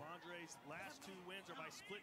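Faint voice of a fight broadcast's commentator, talking continuously in the background.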